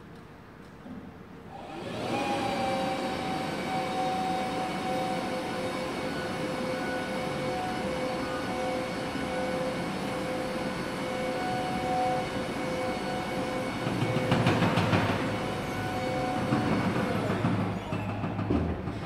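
Electric VNA warehouse truck lowering its raised cab and forks down the mast: a steady motor and hydraulic whine over a mechanical rattle starts about two seconds in. It gets louder and rougher about three quarters of the way through, then stops just before the end.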